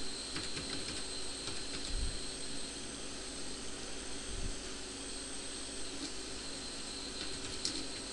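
Computer keyboard keystrokes, sparse and faint, a few short clicks spread over the time, over a steady background hiss with a faint high-pitched whine.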